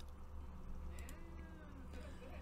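Faint, steady ringing tones of a large frosted quartz crystal singing bowl being played with a mallet, over a low steady hum.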